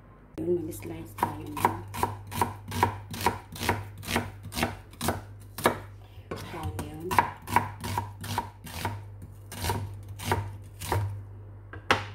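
Kitchen knife chopping onion on a cutting board: a steady run of sharp knocks, about two to three a second, with a brief lull about halfway through.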